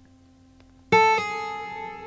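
An acoustic guitar plucked about a second in, one note quickly followed by a second, both left to ring and slowly fade: the start of a music bed.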